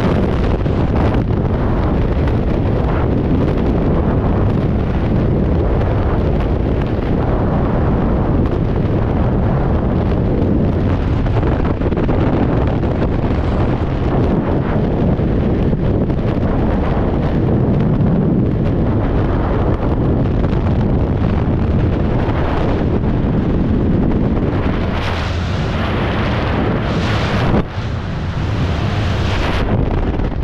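Loud, steady rush of freefall wind over the camera microphone. Near the end the rush changes and drops sharply as the parachute opens, leaving a lower wind noise under the canopy.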